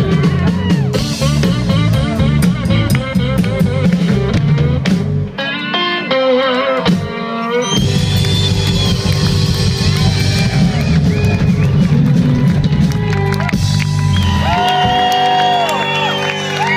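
Live blues-rock band playing an instrumental passage on electric guitar, bass guitar and drum kit. About five seconds in, the bass and drums stop for a couple of seconds while the electric guitar plays a short break of bent notes, then the full band comes back in.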